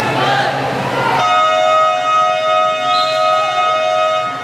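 Gym scoreboard buzzer sounding one long, steady, loud tone for about three seconds, starting about a second in. It marks a stop in play.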